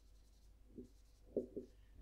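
Marker pen writing on a whiteboard: a few faint, short strokes in the second half.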